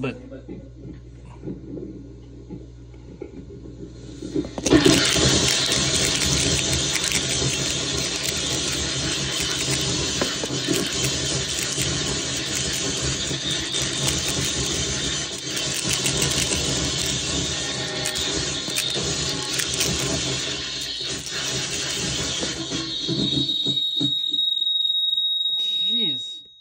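Harsh noise from a Mantic Hivemind fuzz pedal, a DOD Buzzbox clone, fed by a shaker box, with its knobs being turned. It starts as a quieter low buzz, then about five seconds in jumps suddenly to a loud, dense wall of noise with brutal highs. Near the end a steady high whine rises over it.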